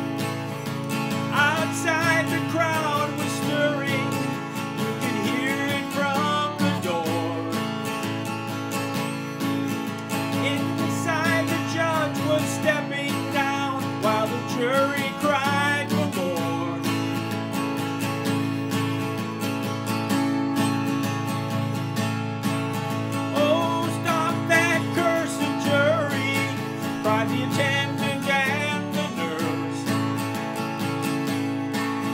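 Martin acoustic guitar strummed steadily with a capo on the second fret, moving between G and C/G chords. A man's singing voice comes and goes over it, with a stretch of guitar alone in the middle.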